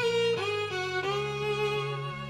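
Violin playing a melody in a recorded song. About half a second in it slides up into a long held note, over held low accompanying notes.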